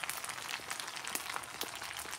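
Faint, steady sizzling with light crackles from a frying pan of spaghetti with shrimp and scallops in hot oil.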